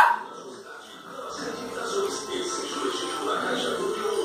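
A small dog barking and yipping over background music, after a loud, sharp cry with a rising pitch right at the start.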